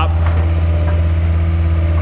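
John Deere skid steer's diesel engine idling, a steady low hum.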